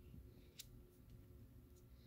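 Near silence with a faint sharp click about half a second in and a fainter one near the end: laminated tarot cards being handled and laid down.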